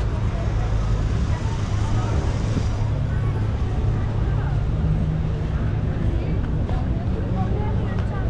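Chatter of passers-by on a busy street, over a steady low rumble of car traffic.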